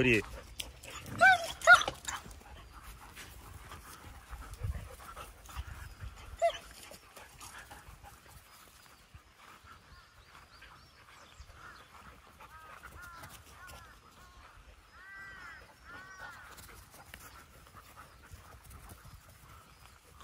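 Dogs yipping in play: a few sharp, high-pitched yips about a second in, then fainter scattered whines and short high calls over a quiet background.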